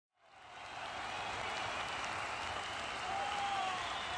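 Crowd applause that fades in quickly and holds steady, with a few short gliding calls in it near the end.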